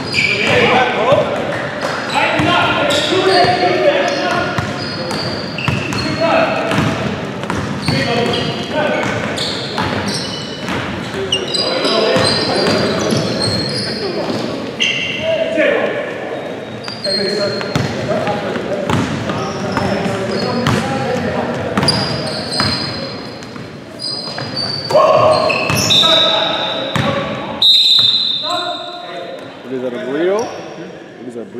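Basketball game sounds echoing in a gymnasium: a ball bouncing on the hardwood floor in repeated sharp knocks, short high sneaker squeaks, and indistinct shouts from players.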